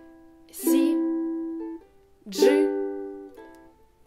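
Ukulele chords strummed one at a time, two strums about half a second and two and a half seconds in, each left to ring and fade away slowly.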